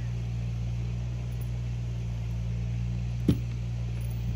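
A steady low mechanical hum, with one short knock about three seconds in.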